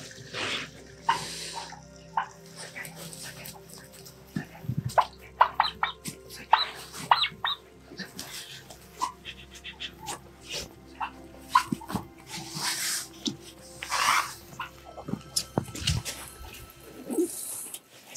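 Domestic turkeys calling with many short, high yelps amid rustling and handling noise as a turkey is caught and carried. A steady low music drone runs underneath.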